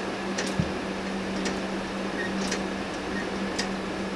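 A 3D-printed plastic weight-driven pendulum clock ticking, about one sharp tick a second, over a steady low hum.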